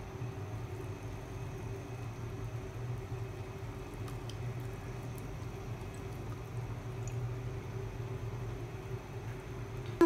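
Soy sauce poured from a bottle into a steel pan of vegetables and dry spaghetti, a faint liquid pour over a steady low hum.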